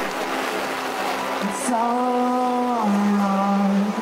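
A man singing live over acoustic guitar through a stage PA, holding two long notes in the second half, the second lower than the first, over a steady hiss.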